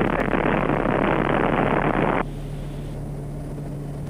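Quest Kodiak 100's turboprop engine and propeller running at takeoff power during the takeoff roll, a loud steady rush of noise. About two seconds in it drops abruptly to a quieter, steady hum.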